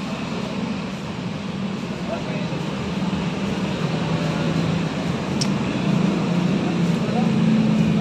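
Roadside traffic: a motor vehicle engine hum that slowly grows louder, with faint voices in the background.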